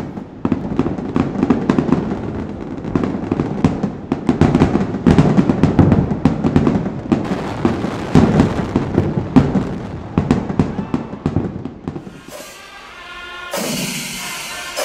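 Large fireworks display: a dense, fast barrage of bangs and crackles for about twelve seconds, fading out near the end as music takes over.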